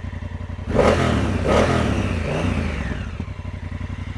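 2019 Honda CRF1000L Africa Twin's parallel-twin engine idling with an even beat, blipped twice about a second in and falling back to idle.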